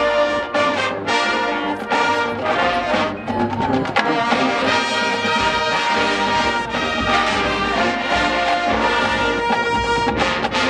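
Marching band playing a brass-led piece, with trombones and trumpets holding chords over drums.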